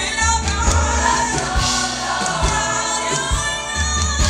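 Large mass gospel choir singing in harmony, backed by a live band with sustained bass notes and drum hits.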